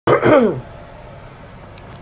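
A man's short vocal sound, falling in pitch, in the first half second, then a steady low hiss.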